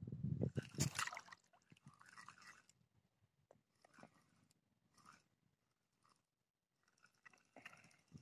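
Fabric rustling and handling noise against the camera's microphone during the first second and a half, followed by a few faint scattered clicks and rustles.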